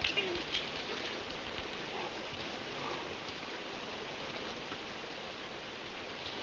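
A man sobbing quietly, a few faint broken catches of breath in the first few seconds, over a steady background hiss.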